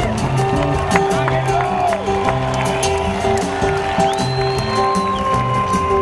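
Live band playing an instrumental passage: an upright bass plays a line of short low notes under acoustic guitar, with long held melody notes on top and light cymbal ticks.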